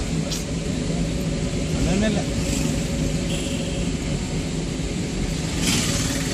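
Steady engine and road noise of a moving car heard from inside the cabin, an even rumble with a faint drone, and a short spoken phrase about two seconds in.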